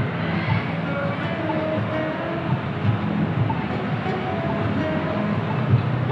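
Street traffic at a busy intersection: a steady rumbling noise of vehicles, with music playing over it in short notes that change pitch.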